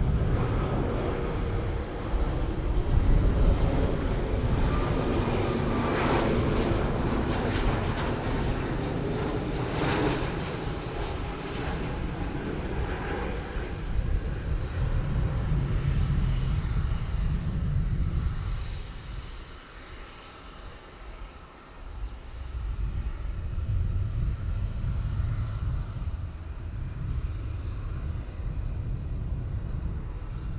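Airbus A330-300 jet engines on landing: a steady loud rumble with a whine through the approach and flare, dropping away briefly after touchdown, then swelling again as the airliner rolls out on the runway.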